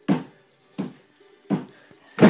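Three hard knocks, evenly spaced about three-quarters of a second apart, each dying away quickly.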